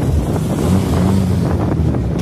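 Volkswagen Golf engines running as the cars move slowly at low speed, a steady low drone. Heavy wind buffets the microphone over it.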